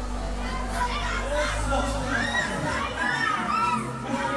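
Crowd of adults shouting and laughing excitedly, with high rising-and-falling shrieks from about a second in.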